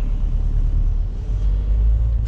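Opel Zafira driving, heard from inside the cabin as a loud, steady low rumble of engine and road noise.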